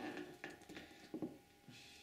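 Faint handling sounds: a few soft ticks and taps as fingers press coconut fat around a cotton-wool wick in a hollowed citrus-peel half on a wooden table.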